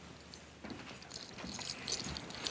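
Faint light metallic jingling with small clicks, a little more from about a second in.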